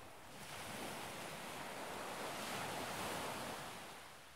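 A rush of noise like surf, swelling about half a second in and fading away near the end.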